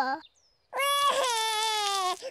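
A cartoon toddler's voice crying: one long, drawn-out cry that starts under a second in and slowly falls in pitch.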